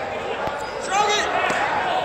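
Wrestlers' feet thudding on the mat in a gym, with a couple of short knocks. About a second in comes a brief shout.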